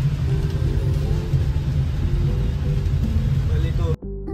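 A loud, steady low rumble with hiss, with faint music and voices beneath it.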